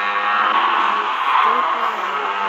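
Horror film soundtrack music: a dense, sustained score over a steady low tone.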